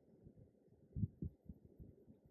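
Faint, irregular soft low thuds of a fluffy powder brush being buffed and pressed against the cheek, several in quick succession about a second in and again near the end.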